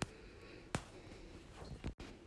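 Metal spoon stirring rice in jaggery syrup in an aluminium pan, quiet, with a few short clicks of the spoon against the pan.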